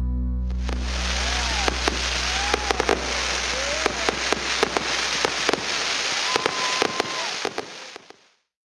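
Fireworks going off: a dense steady hiss of burning sparks, shot through with many sharp pops and crackles, which starts about half a second in. Music fades out underneath.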